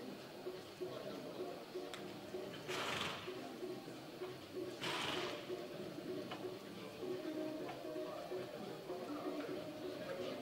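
Arena background of low music and murmuring voices, with two short hissing bursts about two seconds apart.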